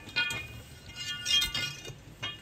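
A long black iron pipe being laid down on a concrete floor, clanking twice with a high metallic ring: once just after the start and again, louder, a little over a second in.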